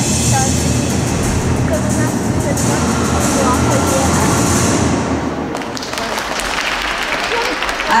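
Audience applauding, with scattered voices calling out, after a rhythmic gymnastics routine ends; the applause thins somewhat after about five seconds.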